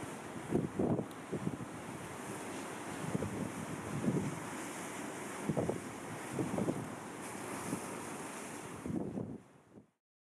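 Wind buffeting the microphone in gusts over a steady rush of sea surf, fading out just before the end.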